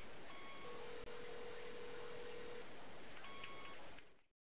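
Faint electronic beep tones over a steady background hiss: a short higher beep, then a lower steady tone for about two seconds, then the short higher beep again near the end.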